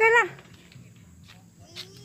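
A short, high-pitched vocal exclamation right at the start, the loudest sound here, followed by quieter faint sounds, including a slow rising squeak and a click near the end.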